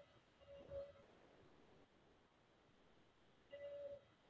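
Near silence on a video-call line, broken by three faint, brief, steady pitched tones: one at the start, one about a second in, and a longer one near the end.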